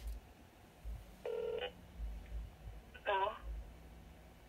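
Cordless phone handset on speaker while a call is being placed: a short steady beep about a second in, then a brief wavering voice around three seconds in, with low bumps from handling.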